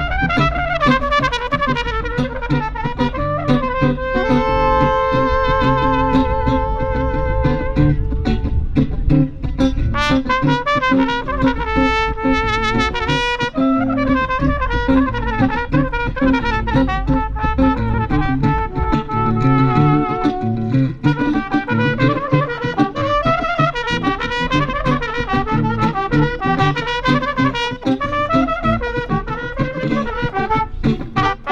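Live trumpet, saxophone and electric guitar playing a tune together through PA speakers. Long held horn notes with vibrato come at several points over a steady low rhythmic backing.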